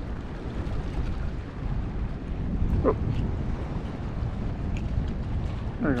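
Wind rumbling steadily on the microphone, with a small splash near the end as a small fish is dropped back into the water.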